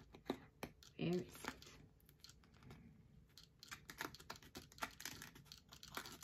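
Faint rustling, scraping and small clicks of a cardboard toilet-paper-roll tube being slid onto the edge of a paper plate, with a brief vocal sound about a second in.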